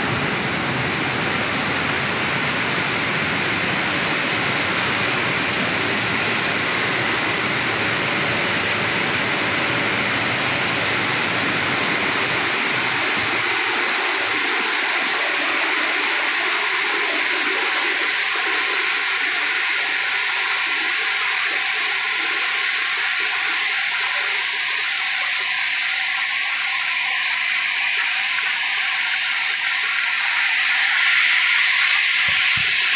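Steady rushing water spray and hiss from a continuous tunnel sterilizer and cooling section spraying glass jars of peaches on a mesh belt. The lower rushing drops away about halfway through, leaving a high, steady hiss.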